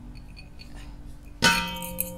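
A stainless steel mixing bowl struck once about one and a half seconds in, ringing on afterwards.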